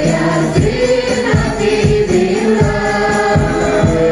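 Group singing of an Islamic devotional song (sholawat) with several voices together, backed by frame-drum beats.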